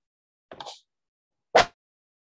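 Two short knocks with dead silence between: a soft one about half a second in, then a sharper, louder one near the end.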